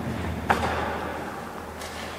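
A single sharp knock about half a second in, ringing briefly in a large empty concrete hall, followed by low steady background noise.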